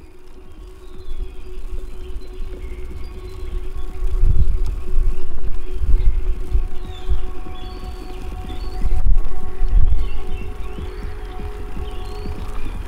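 Music playing from the car stereo: sustained held notes over a deep bass line, growing louder about four seconds in.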